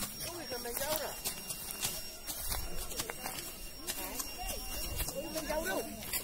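Chatter of several people in the background, with irregular knocks and scrapes of hand hoes chopping into grassy turf.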